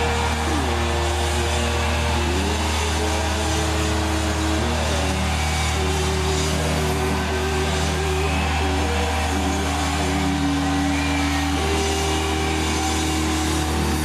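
Live rock band: electric guitar holding long sustained notes that slide to a new pitch every couple of seconds, over a steady low bass note, with crowd noise underneath.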